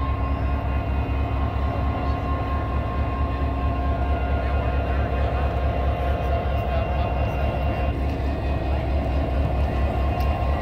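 Canadian Pacific diesel locomotive idling at a standstill: a steady, low, rapidly pulsing engine throb with a constant hum above it.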